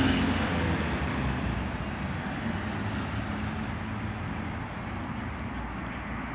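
Road traffic noise: a vehicle's sound fading over the first two seconds, then steady traffic noise.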